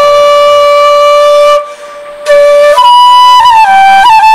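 Bansuri, a bamboo transverse flute, played solo: a long held note, a short pause for breath about one and a half seconds in, then the melody leaps up and steps back down.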